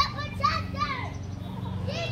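Children's voices in the background: short, high, indistinct calls in the first second, over a steady low hum.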